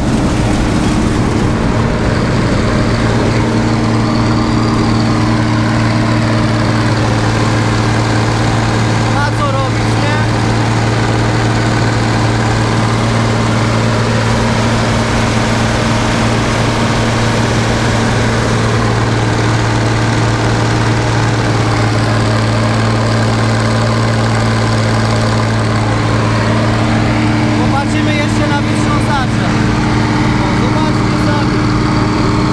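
Bizon combine harvester's diesel engine running steadily at working speed, heard close up over the open engine bay. The engine is labouring under a heavy crop of rye.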